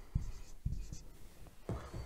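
Marker pen writing on a whiteboard: a few short, quick strokes in the first second as a word is written out.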